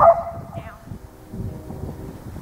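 A herding dog gives one loud, short bark right at the start, its tone trailing off over about half a second, followed by softer outdoor ambience.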